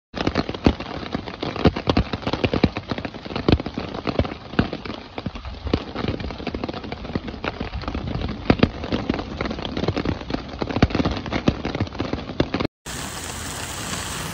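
Small hailstones mixed with rain hitting an umbrella: a dense, irregular stream of sharp ticks over a steady hiss. Near the end it cuts off abruptly and gives way to a smoother, steady hiss of rain.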